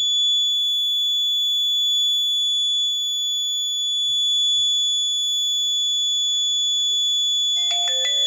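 Piezo buzzer alarm sounding a continuous, steady high-pitched tone: the accident alert, set off by the accelerometer sensing the vehicle tipped onto its left side. Near the end a phone's message alert chimes in.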